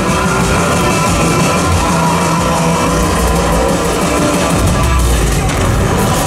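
Loud show soundtrack music played over outdoor loudspeakers for a night-time fountain and fireworks show.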